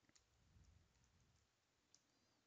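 Near silence with a few faint computer-keyboard key clicks as a word is typed.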